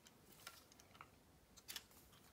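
Near silence, with a few faint clicks from a plastic LEGO brick model being handled and turned over in the hands.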